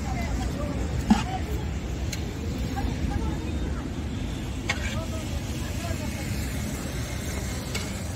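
Steel ladles knocking against large aluminium cooking pots and steel plates while rice and kadhi are served: a sharp metallic clink about a second in and a lighter one near the middle, over a steady low rumble and faint voices in the background.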